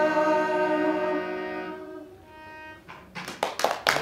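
A group song with harmonium ends on a held chord that fades away over the first two seconds. About three seconds in, a few people start clapping.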